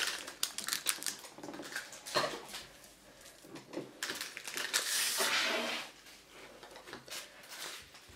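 Paper and plastic packaging being handled: rustling and crinkling with a run of small clicks and taps, busiest at the start and again around halfway through.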